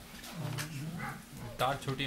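Indistinct low voices murmuring, with a short louder vocal sound about one and a half seconds in.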